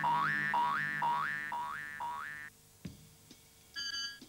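Cartoon sound effect: a rapid series of rising 'boing'-like pitch glides, about four a second, over a low steady hum, stopping suddenly about two and a half seconds in. A couple of faint clicks follow, then a bright chiming musical note near the end.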